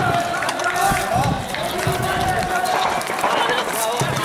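Men's voices shouting and calling out over one another, unintelligible, with bursts of low rumble on the microphone in the first half.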